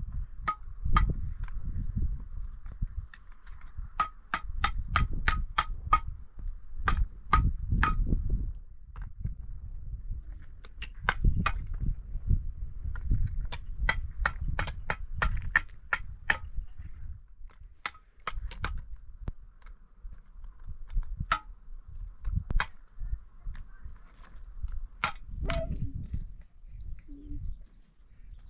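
Sharp metallic taps of a mason's trowel on hollow concrete blocks and mortar, coming in quick runs of several taps a second with pauses between, over a low, uneven rumble.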